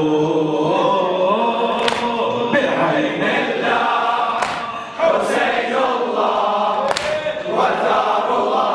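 A congregation chanting the refrain of a Husseini latmiya (lamentation) together, many voices in unison. A sharp hand strike from the crowd lands roughly every two and a half seconds in time with the chant.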